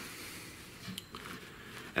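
Faint handling noise as a wooden chair-seat board is slid and settled on a thick sheet of upholstery foam, with a light click about a second in.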